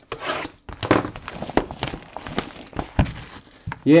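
Irregular crinkling, rustling and light knocks as a Topps Chrome trading card box and its wrapping are handled and opened by hand.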